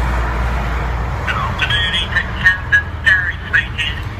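Steady outdoor street noise: a low rumble of road traffic and wind on a phone's microphone. From about a second in, faint high-pitched, wavering sounds come and go over it.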